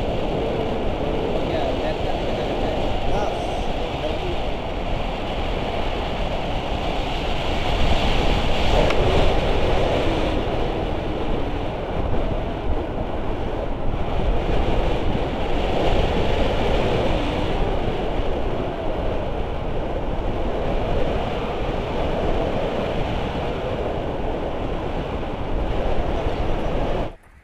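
Steady, loud rush of wind buffeting an action camera's microphone in tandem paragliding flight.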